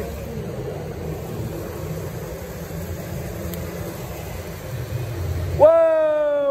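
A steady low outdoor rumble, like distant traffic or wind on the microphone, with no clear sound of the putt. Near the end a louder pitched, wavering tone comes in.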